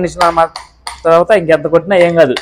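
A man's voice, laughing and talking, with a couple of short sharp clicks about a second in.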